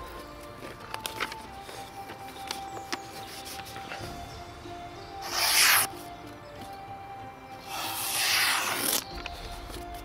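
Background music with steady held notes, and two loud rustles of a sheet of lined paper being handled: a short one about five seconds in and a longer one near the end.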